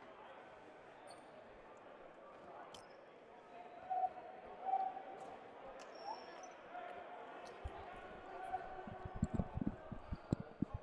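Gym murmur of distant voices. Near the end comes a quick, irregular run of dodgeballs bouncing on the hardwood floor.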